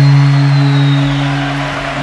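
A single loud low note with overtones, held steady in pitch without a break, over a hiss of background noise, easing off slightly near the end.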